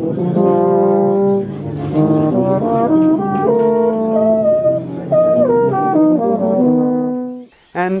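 Yamaha YEP-642 compensating euphonium played solo: a melodic phrase of held notes stepping up and down, ending about seven seconds in. The tone is what the player judges a smallish, shallow sound, like an old non-compensating euphonium.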